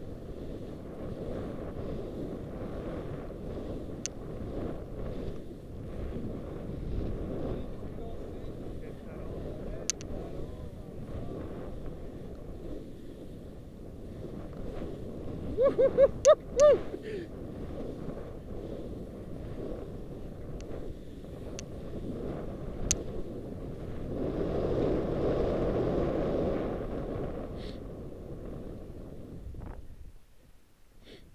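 Wind rushing over an action-camera microphone as skis slide down through snow, a steady low rush that swells for a few seconds near the end. About halfway through, a skier gives a loud 'woo-hoo' and laughs.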